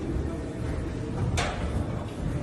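Busy indoor corridor ambience: a steady low rumble with one short, sharp clack about one and a half seconds in.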